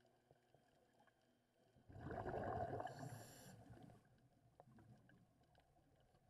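A scuba diver exhaling through a regulator: one burst of rushing, gurgling bubbles starts about two seconds in and fades out within two seconds, heard underwater through the camera housing. Faint scattered clicks sound before and after it.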